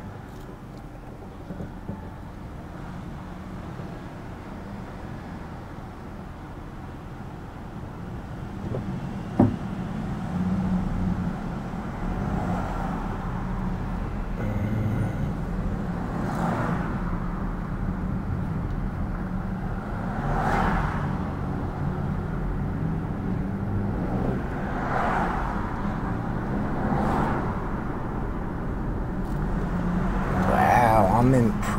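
Car running at low speed, heard from inside the cabin: a steady engine and road rumble that grows louder in the second half as the car picks up speed, with a single sharp click about nine seconds in and several brief swells of noise later on.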